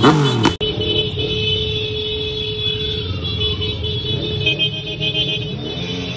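A motorcycle and scooter convoy running along a street, with steady engine noise and a held tone. In the first half second a siren-like warble repeats a few times a second, then cuts off abruptly.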